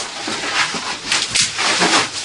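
Strained, breathy cries and grunts from people wrestling in a physical struggle, in irregular bursts, the loudest a little after a second in.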